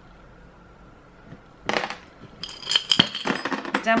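Small metal trinkets rattling and clinking against a glass jar as it is tipped and shaken to pour them out: a short clatter just before two seconds in, then a quick run of clinks with some ringing near the end.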